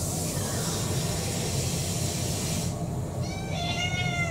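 Domestic cat giving one long, wavering meow that starts about three seconds in, begging for its dinner. Before it, a steady hiss that stops abruptly.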